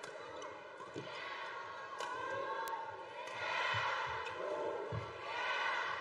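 Badminton rally: sharp racket strikes on the shuttlecock, a second or so apart, over a loud arena crowd whose noise swells in waves.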